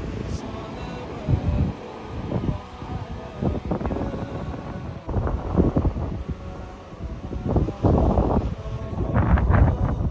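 Wind buffeting the microphone in irregular gusts, strongest near the end.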